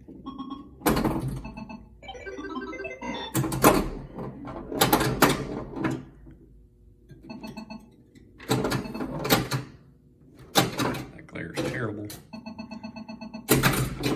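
Bally Star Trek pinball machine in play: a series of sharp knocks from its solenoids, bumpers and flippers striking, with rapidly pulsing electronic game tones between them.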